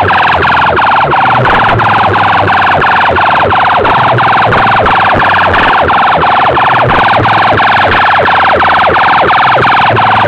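Very loud siren-like electronic sound blasting from a tall stack of horn loudspeakers, repeating in short falling sweeps about three times a second. It sits mostly in the middle range, with little deep bass.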